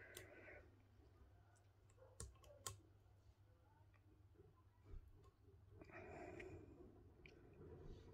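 Near silence, with a few faint clicks of small metal parts on a tufting gun's mechanism being handled and nudged into place: one right at the start, two close together about two and a half seconds in, and one near five seconds.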